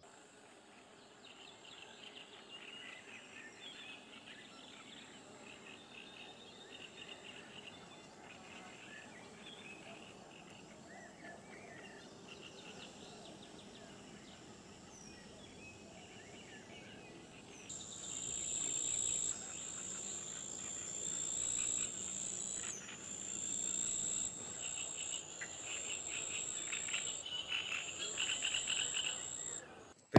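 Birds calling and insects chirping faintly in riverside reeds and grass. About eighteen seconds in it grows louder, with a steady high-pitched insect trill that stops and restarts several times under the bird calls.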